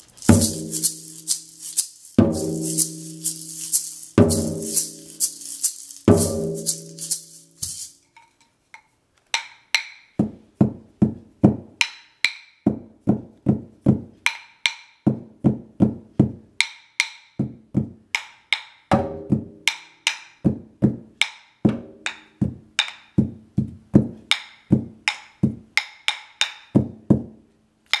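A large frame drum struck with a soft mallet about every two seconds, each beat ringing on, under a steady rattle from a gourd maraca. After a short pause, wooden rhythm sticks are clicked together in a quick, uneven rhythm, a few strokes landing on the drum.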